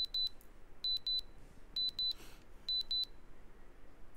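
Countdown timer alarm beeping in high-pitched double pips, four pairs about a second apart, signalling that the countdown has run out to zero.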